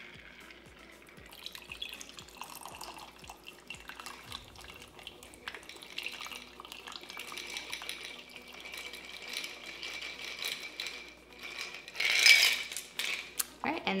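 Cocktail being strained from a metal shaker into a glass of ice: a thin stream of liquid pouring over the ice, with a sharper clink near the end.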